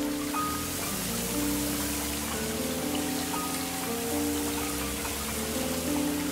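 Steady spray of water from a car wash running as a car passes through it, over gentle background music with long held notes.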